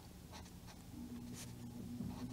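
Brush-tip alcohol marker stroking on coloring-book paper, a few faint short scratchy strokes as squares are filled in.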